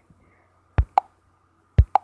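Fingertip taps on a smartphone touchscreen: two quick double taps, about a second apart, each pair a dull knock followed by a slightly higher, pluckier click.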